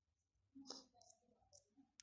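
Near silence with a few faint, brief clicks.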